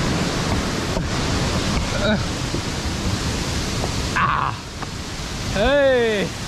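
Steady rushing of a nearby waterfall, with low rumble from the moving camera. A short voiced call near the end.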